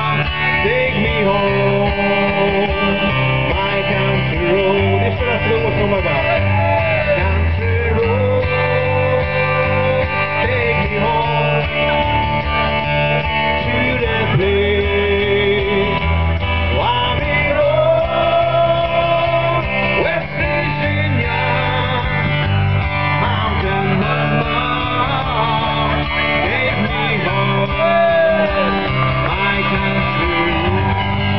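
Live country band playing: acoustic guitar and a steady bass line under a lead melody of long, bending held notes, running without a break.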